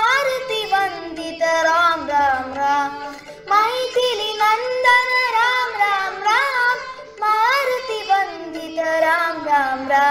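Two young girls singing a Hindu devotional bhajan to Lord Ram, in long drawn-out phrases with gliding, ornamented turns in the melody.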